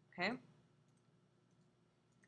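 A few faint, scattered computer mouse clicks after a single spoken "okay".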